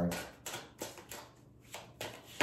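Tarot cards being handled and shuffled: a few light, separate card flicks and rustles.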